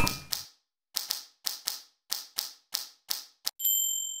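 Typewriter keys clacking one strike at a time, about a dozen sharp clicks at an uneven pace, followed by a bell ding near the end.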